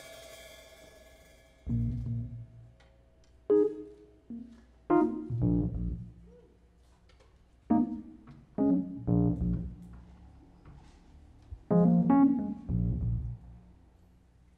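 Sparse, semi-improvised band music: a cymbal wash fades out at the start, then separate piano chords with deep low notes are struck in short clusters with pauses between them.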